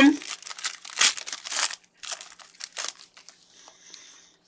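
Plastic trading-card packaging crinkling and rustling in gloved hands, in a run of short bursts that thin out over the last second.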